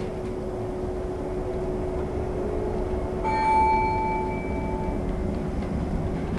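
Inside a VDL Citea SLE-129 Electric bus under way: steady low road rumble with a constant hum from the electric drive. About halfway through an electronic chime from the bus's onboard signal sounds, one held tone lasting under two seconds.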